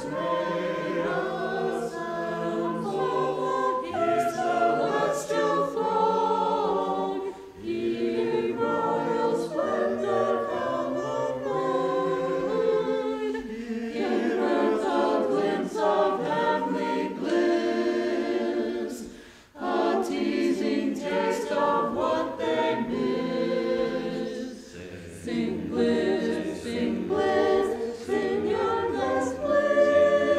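Mixed church choir of men and women singing together in sustained phrases, with short breaks between phrases about 7 and 19 seconds in.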